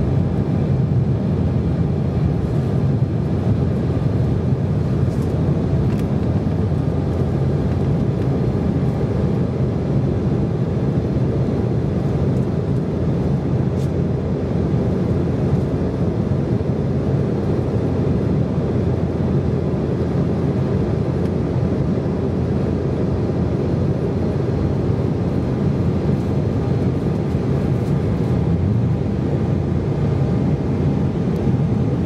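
Steady cabin noise inside an Embraer 190 in its climb after takeoff: the low drone of its GE CF34-10E turbofan engines mixed with rushing airflow, unchanging throughout, with a few faint steady tones over it.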